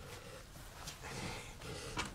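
A man's faint heavy breathing, quiet and without words.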